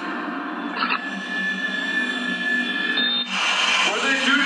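Television soundtrack music played through the TV's speaker: a steady low drone with a single high tone held from about one second in to three seconds in.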